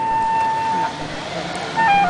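Clarinet holding a long note that ends about a second in. After a short pause it starts a new phrase on lower notes near the end.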